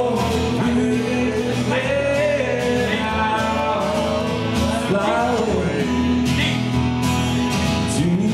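A man singing a slow song into a microphone while strumming an acoustic guitar.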